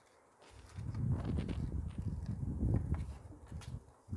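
Hands handling and folding a sheet of origami paper against a board: irregular low rubbing and thudding with faint paper rustles, starting about a second in.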